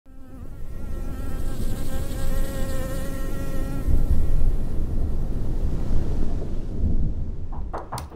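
A bee buzzing in flight: a steady droning hum that swells over the first couple of seconds and fades out after about four seconds, over a deep rumble.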